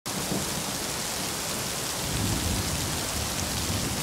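Steady hiss of heavy rain with a low, uneven rumble of thunder underneath.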